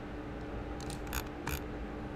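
A few faint clicks from a computer mouse, clicking and scrolling, over a low steady hum.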